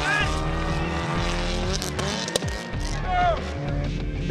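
Subaru Impreza rally car's flat-four engine at high revs, its note falling in pitch over the first two seconds as the car slides through a dirt corner, with background music underneath.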